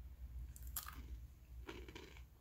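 A person biting into and chewing a sesame-coated Simit cracker, with a few faint crunches.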